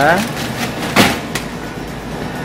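A single sharp knock about a second in and a lighter click shortly after, as the stainless-steel reach-in freezer is handled, over a steady fan hum from the refrigeration unit.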